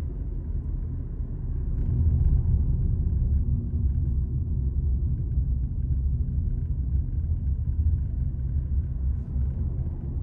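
Steady low rumble of a car's engine and tyres on the road, heard from inside the cabin while driving, growing a little louder about two seconds in.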